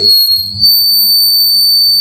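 A loud, steady high-pitched whine with fainter overtones above it, over a faint low electrical hum, from the handheld microphone's sound system.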